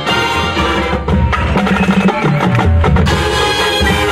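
University marching band playing live, with drums and mallet percussion to the fore and sharp rhythmic strokes from about a second in over sustained band tones.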